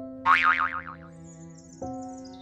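A comic cartoon 'boing' sound effect: a wobbling pitch that bounces up and down several times for under a second, starting about a quarter second in, over background music with sustained chords.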